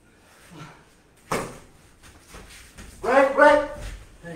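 A person's loud, drawn-out shout near the end, rising in pitch and then held, with a sharp hit or smack about a second earlier.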